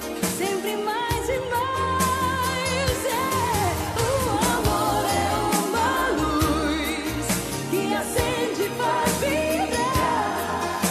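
Romantic pop ballad: a lead vocal melody with vibrato over a stepping bass line and steady drums.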